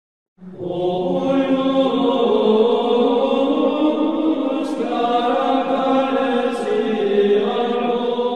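Intro music of sung chant: voices holding long, sustained notes that step to a new pitch every second or two, starting about half a second in.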